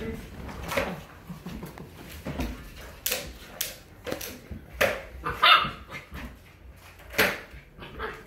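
Young puppy barking: about six short, high barks spaced irregularly over several seconds.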